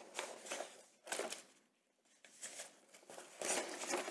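Faint rustling of black tissue-paper-wrapped packages being handled and lifted from a box, in a few short bursts with quiet gaps between.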